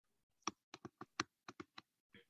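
A quick series of about eight short, sharp clicks, one for each pen stroke as a word is handwritten onto a computer screen.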